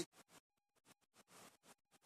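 Near silence with faint, irregular scratches: a handheld phone being moved, with fingers or clothing rubbing near its microphone.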